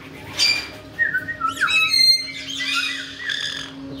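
Caique parrots calling: a harsh squawk about half a second in, then a quick run of sliding whistles and chirps for the next two and a half seconds.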